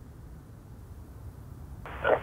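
Low, steady distant rumble of an Airbus A330-202 twin-engine jet airliner climbing away after takeoff. Near the end, air traffic control radio speech cuts in, much louder.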